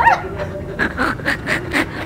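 Laughter: a high rising-and-falling squeal, then a run of quick breathy bursts, about five a second.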